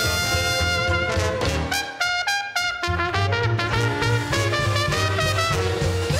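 A traditional New Orleans jazz band playing live: trumpet, clarinet and trombone over banjo, string bass and drums, with the trumpet out front. About two seconds in, the low bass drops out for under a second, then the full band comes back in.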